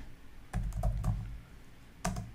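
A short run of keystrokes on a computer keyboard, about half a second to a second and a half in, as a word is typed.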